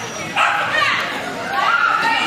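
Dog barking over people's voices.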